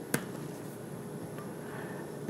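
A single sharp click of a laptop keyboard key just after the start, then quiet room tone.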